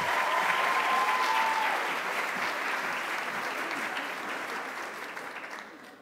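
Audience applauding in a large hall, the clapping slowly dying away toward the end.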